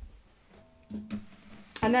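Acoustic guitar being laid down on the floor: a soft thump as the body touches down, then a knock about a second in with a low string ringing on briefly.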